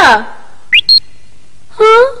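A cartoon sound effect: a short high whistle-like tone that glides quickly upward and then holds for a moment, about three-quarters of a second in, set between lines of dubbed cartoon dialogue.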